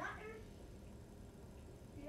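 A house cat meowing once, a single call rising in pitch.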